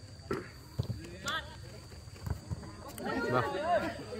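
Players calling out across a football pitch, with a few sharp knocks of the ball being kicked in the first couple of seconds and a louder shout near the end.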